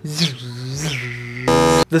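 Lightsaber sound effect: a wavering hum with swooshing pitch glides, ending in a short, loud electric buzz about a second and a half in.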